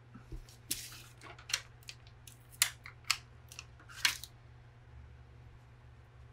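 Paper and cardstock being handled by hand on a cutting mat: a quick series of about eight short, crisp rustles and crackles over the first four seconds, then a pause.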